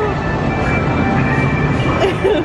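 Theme-park ride car rumbling steadily along its track, a continuous low rumble.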